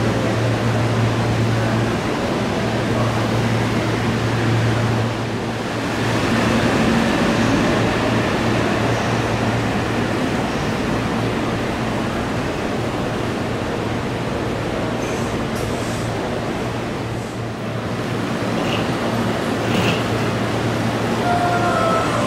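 Electric trains at a station platform: a steady low hum and rumble of train equipment and platform noise, with a brief dip about two-thirds of the way in.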